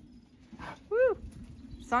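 A dog giving one short, high yip or whine about a second in, rising and then falling in pitch.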